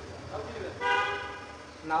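A short, steady, horn-like pitched tone starts abruptly about a second in and fades out within about three-quarters of a second.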